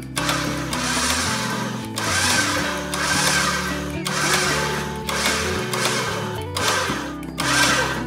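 Smittybilt X20 electric winch running in short spells of a second or two with brief breaks, reeling in its synthetic rope, over background music.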